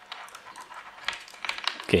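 Handling noise from unwinding the coiled cable of a cheap clip-on lavalier microphone by hand: a run of light scratches and small irregular ticks.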